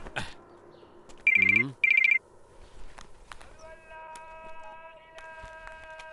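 A telephone ringing: two short, shrill rings in quick succession about a second in. A soft, sustained background music chord follows later.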